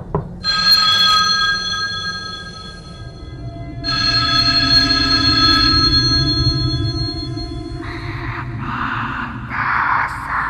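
A telephone ringing twice, each ring a set of steady high tones lasting a few seconds, over a low drone. Near the end come several short noisy bursts.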